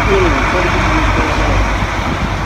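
A vehicle engine idling: a steady low rumble, with a brief snatch of a voice near the start.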